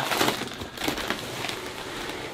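Plastic snack packets and cardboard rustling as a hand rummages in a box and pulls out a bag of snacks.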